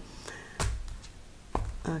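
A tarot deck handled at the table: two sharp taps about a second apart as the cards are knocked and handled, with soft rustling.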